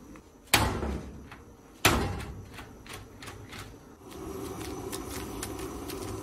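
Hand-pulled noodle strands slapped twice onto a wooden chopping board: two sharp smacks about a second and a half apart. About four seconds in, a steady sound of water boiling in a wok begins.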